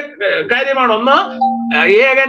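A man speaking Malayalam, with a steady tone held under his voice for about a second in the middle.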